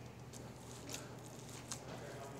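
Faint soft squishing and a few small ticks as hands pack moist pork-sausage stuffing into the center of a pork crown roast, over a low steady hum.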